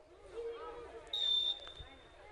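A referee's whistle gives one short, steady blast about a second in, the signal for the free kick to be taken. Faint voices from the pitch can be heard before it.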